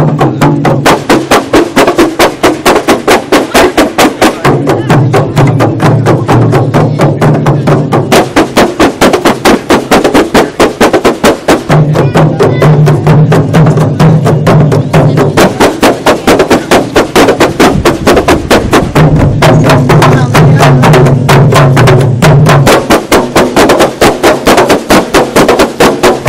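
A troupe of kompang, Malay hand-beaten frame drums, playing together in a fast, dense interlocking rhythm of sharp slaps. A low steady drone sounds under the drumming in stretches of a few seconds, cutting in and out several times.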